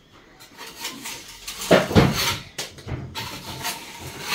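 Metal putty knife scraping loose, peeling paint off a plastered wall in irregular strokes, the loudest about two seconds in. The flaking paint is being stripped back so it stops lifting further.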